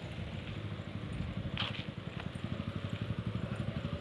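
A small engine running steadily nearby, a low rumble of fast, even pulses, with one short higher sound about one and a half seconds in.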